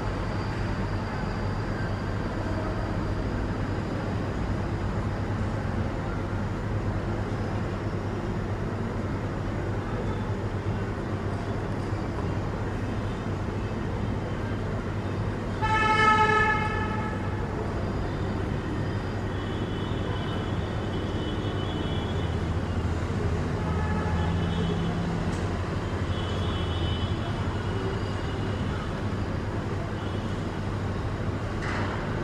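Steady background traffic rumble with a low hum, and one vehicle horn honk lasting about a second near the middle.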